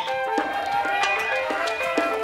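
Music: an instrumental stretch of an R&B song with a steady drum beat under sustained melodic instrument lines, without singing.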